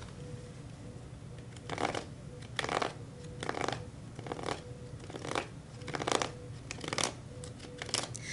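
A deck of tarot cards being shuffled in the hands: a steady series of short papery strokes about a second apart, starting about two seconds in.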